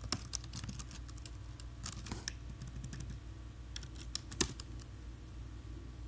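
Typing on a computer keyboard: irregular runs of key clicks with short pauses, one key struck harder a little past the middle, over a faint steady low hum.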